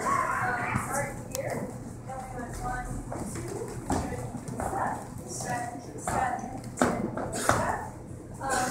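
Speech: a person talking, with a few sharp taps, the last two near the end.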